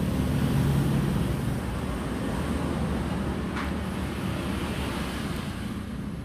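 Steady low mechanical hum under a rushing hiss, with a faint click about three and a half seconds in.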